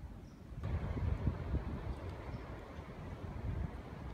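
Wind buffeting the microphone in a rough low rumble, a gust picking up sharply about half a second in and carrying on.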